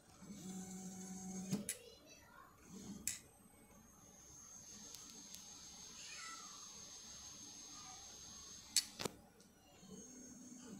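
Artillery Sidewinder X1 3D printer's stepper motors homing the axes: a low steady hum for about a second near the start, whines that glide in pitch as the moves speed up and slow down, and a faint high steady whine through the middle. Several sharp clicks come between the moves.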